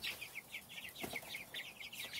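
A flock of Cornish Cross broiler chicks, about four and a half weeks old, peeping: many short, high, falling chirps overlapping in a steady stream.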